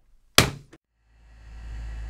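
A corded telephone handset slammed down onto its cradle: one sharp bang, with a smaller knock just after. A low rumble then fades in and grows louder.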